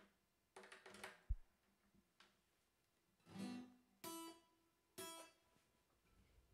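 Acoustic guitar strummed as four separate test chords, with gaps between them, on a guitar just switched in. A short, low thump just over a second in is the loudest sound.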